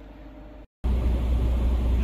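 A faint steady hum, then, after a sudden break just under a second in, a semi truck's diesel engine idling with a loud, steady low rumble.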